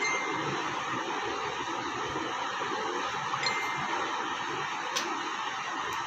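Steady hiss of background room noise. Two short, high beeps come at the start and about three and a half seconds in, and a brief click near five seconds.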